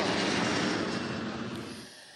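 Jet aircraft noise, a steady broad rushing sound that fades away in the second half.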